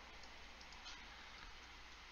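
Near silence: room tone with a low steady hum and a couple of faint clicks.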